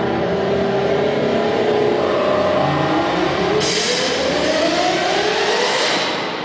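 Show soundtrack played over an arena PA: a sweep rising steadily in pitch for about three seconds, like an engine revving up, with a crash of high hiss about three and a half seconds in.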